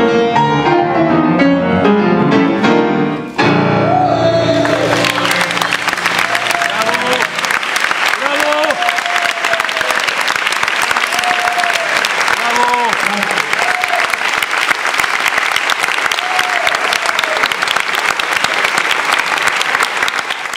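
Grand piano played with many quick notes, stopping on a last chord about three seconds in. An audience then breaks into sustained applause with a few shouts of cheering.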